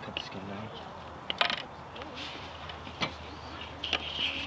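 A few sharp clicks or knocks, the loudest about a second and a half in and another about three seconds in, over faint low voices and outdoor background.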